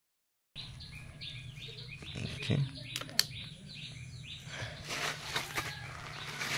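A small bird chirping in quick repeated notes, about three a second, over a low steady hum, with one sharp click about three seconds in.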